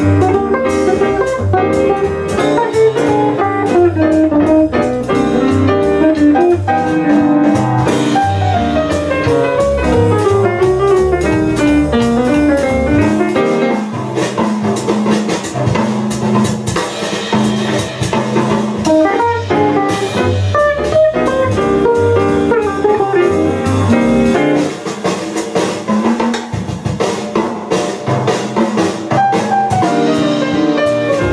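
Jazz duo of archtop guitar and grand piano playing together, with continuous melodic lines over chords and bass notes that drop out for short stretches.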